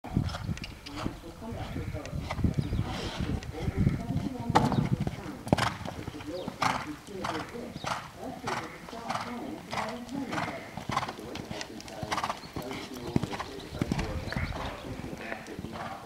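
Ridden horse cantering on a sand arena surface: soft hoofbeats with a regular beat of about one stride a second.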